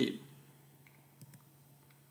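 A man's speaking voice ends right at the start, then near silence with two or three faint clicks a little past the middle.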